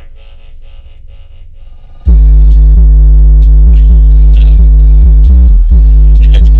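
Bass-heavy electronic music played through a car audio system with a Rockville RMW8A 8-inch ported powered subwoofer, pushed hard. A quieter pulsing synth intro gives way about two seconds in to very loud, deep bass that holds with only a brief break near the end.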